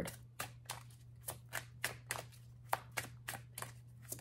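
Tarot cards being handled, giving a run of short card clicks at about three a second, over a faint steady low hum.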